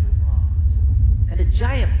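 A loud, steady deep rumble from an electronic music score, with a speaking voice over it for a moment near the end.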